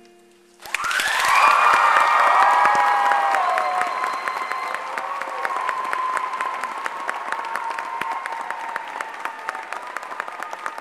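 A school-hall audience breaking into applause about half a second in, just as the last acoustic guitar chord dies away, with whoops and cheers over the clapping at the start; the applause then carries on steadily as the clapping thins.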